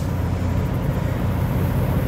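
Steady low rumble of outdoor background noise, even in level throughout.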